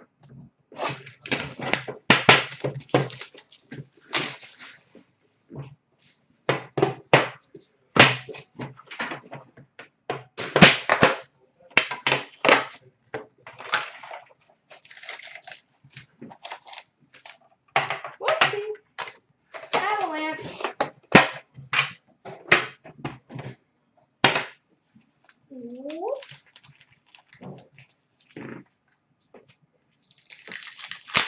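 Hockey trading card boxes and foil packs being handled and opened by hand: an irregular run of clicks, taps and crinkling wrapper noise.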